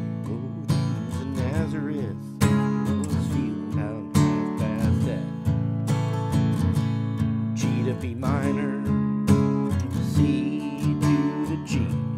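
Steel-string acoustic guitar, capoed at the second fret, strumming chords in a steady rhythm.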